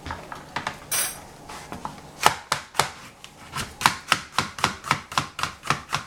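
Cleaver slicing a yellow capsicum into strips on a plastic cutting board: a few light knocks and a short rustle as the knife is taken up, then from about two seconds in a steady run of sharp knocks of the blade on the board, about four a second.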